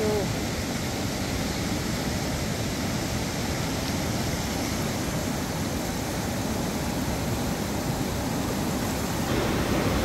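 A flood-swollen, muddy river rushing fast over rocks and rapids: a steady roar of water.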